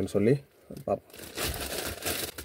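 Plastic courier mailer bag crinkling as it is handled and pulled open, in a short noisy stretch starting about a second and a half in.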